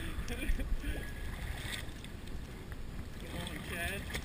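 Wind on the microphone and choppy water slapping against a fiberglass boat hull, with faint voices shortly after the start and near the end.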